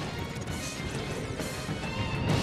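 Television sports-segment theme music with crashing percussion hits, swelling up loud as the animated title plays.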